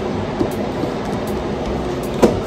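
Steady loud rushing hiss, a constant "shhh" in the office that she thinks comes from the hospital's internet wiring equipment, not the air conditioning.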